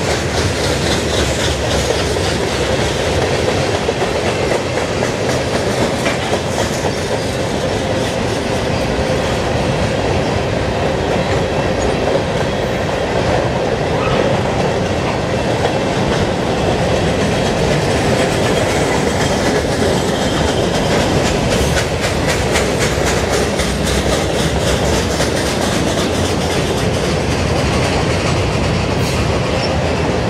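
Freight train cars rolling past close by, tank cars and covered hoppers: a loud, steady rumble of steel wheels on rail with repeated clicks as the wheels cross rail joints.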